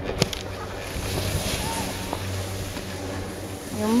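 Steady rushing wind noise on the microphone, with a brief knock near the start.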